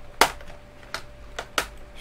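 Plastic bottom access cover of a Lenovo G770 laptop being grabbed and wiggled loose, giving four short sharp plastic clicks, the first and loudest just after the start.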